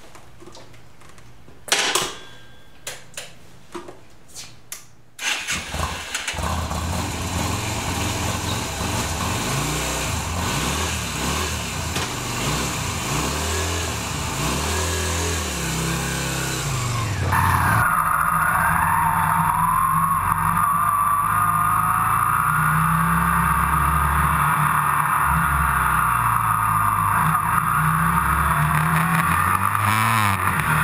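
A few clicks, then a Yamaha Virago 250's V-twin engine starts about five seconds in, idles, and revs as the bike pulls away. Past the halfway point the engine is heard under way, with steady wind noise on a camera mounted low on the bike.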